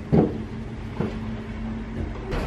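Footsteps climbing wooden stairs: two thumps about a second apart, the first the louder, over a steady low hum.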